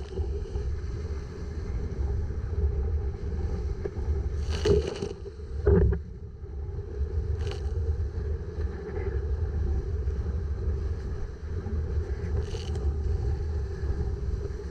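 Wind buffeting the microphone of a camera on a Hobie Cat 16 catamaran sailing at speed, with water rushing past the hulls. Spray splashes against the boat and lens several times, loudest twice around the middle.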